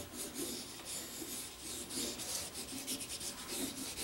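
Coloured pencils scratching across drawing paper in quick back-and-forth shading strokes, about two or three strokes a second.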